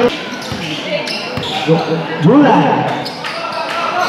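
A basketball bouncing on a concrete court, a few separate bounces in the first second and a half, with voices calling out over it after that.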